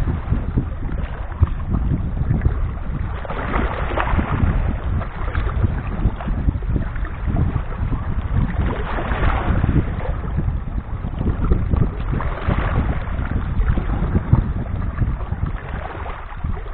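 Small sea waves washing in over shore rocks, swelling every few seconds, over a steady low rumble of wind on the microphone.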